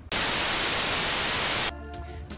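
TV-static sound effect: a loud, even hiss of white noise lasting about a second and a half, which cuts off suddenly. Music starts near the end.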